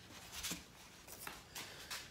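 Faint handling noise of a wooden template being lifted and carried: light rubbing, with small knocks about half a second in and again near the end.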